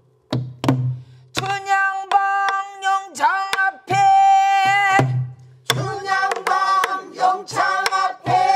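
Pansori singing: a voice holding long notes with a wavering vibrato, punctuated by strokes on the buk barrel drum.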